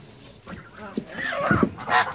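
Geese giving a few short honking calls in the second half, after a quiet start.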